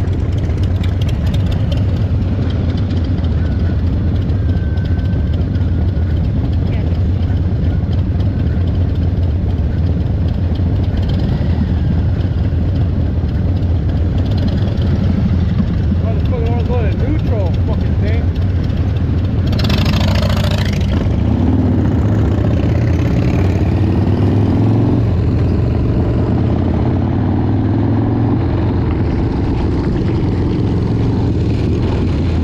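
Harley-Davidson Dyna Low Rider's Evolution V-twin engine idling steadily at a stop. About two-thirds of the way in there is a brief loud rush of noise. Then the revs climb again and again as the bike pulls away through the gears.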